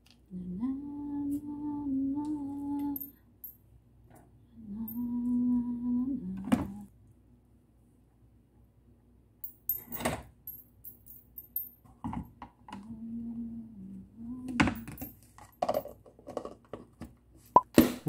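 A person humming a few held notes in short phrases, with pauses between them. Several sharp clicks and knocks come in between the phrases.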